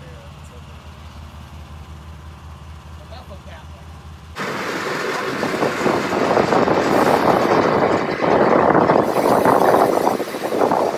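An engine idles with a steady low pulsing hum. About four seconds in, a loud, dense rushing rattle takes over and grows louder: the seed tender running soybeans through its auger and chute, as a test of whether the replaced shear bolt has cured the auger binding.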